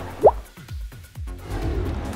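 Background music with a short rising 'bloop' sound effect, like a water drop, about a quarter of a second in.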